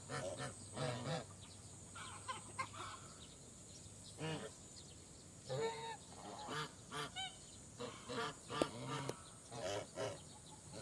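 A flock of African geese honking in short, scattered calls, several in quick succession near the end, with a brief lull in the middle.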